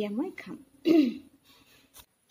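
Two short vocal sounds from a woman, about a second apart, the second louder, like throat clearing.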